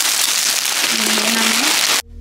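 Dense, steady crinkling and rustling as a boxed artificial Christmas tree's flocked branches and its cardboard box are handled.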